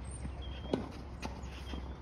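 A few dull knocks of a tennis ball struck with a Wilson Blade racket and bouncing on a clay court, the clearest about three-quarters of a second in, with lighter knocks after.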